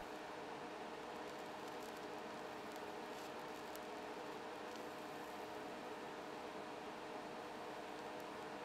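TIG welding arc laying a stitch weld on steel plate: a faint, steady hiss with a faint steady hum under it.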